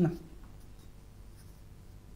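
A woman's voice cuts off at the very start, then quiet room tone with a faint low electrical hum.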